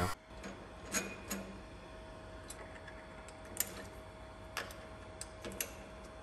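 Faint metallic clicks and taps at irregular intervals, about a dozen in all, as the jaws of a lathe chuck are unscrewed and swapped with a hex key, over a faint steady thin tone.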